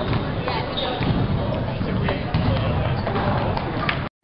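Table tennis rally: the ball clicks sharply off paddles and table several times, over background chatter in a gymnasium.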